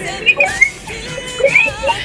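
Excited voices coming down a telephone line played over the hall's speakers, with no clear words. Near the end comes a high, wavering cry.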